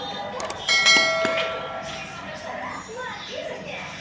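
A single metallic clink about a second in, ringing for about half a second, with faint voices in the background.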